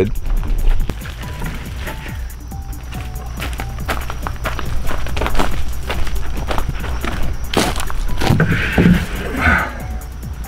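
Background music with a steady beat. Under it come knocks and handling noise as a whole raw lamb is carried and laid into a large plastic cooler, with the sharpest knock about two-thirds of the way through.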